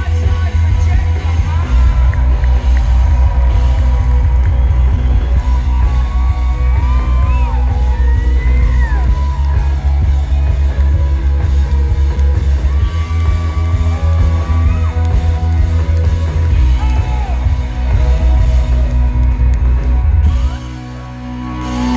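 Indie rock band playing live and loud: electric guitars, bass and drums, with notes sliding up and down in the middle.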